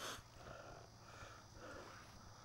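Near silence: faint outdoor background, with a short breathy noise right at the start.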